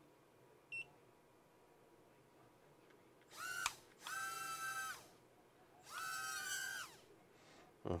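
Proto X micro quadcopter's four tiny motors spinning up in short throttle blips: a high whine, once briefly and then twice for about a second each, the last rising as it starts and falling away as it stops, showing the quad works. A single short electronic beep comes shortly after the start.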